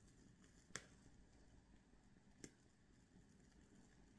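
Near silence: faint room tone with two short, faint clicks about a second and a half apart.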